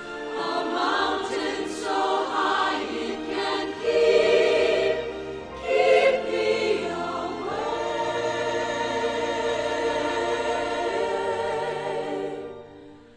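A choir singing a slow, gospel-style song in short phrases, then holding one long chord through the second half.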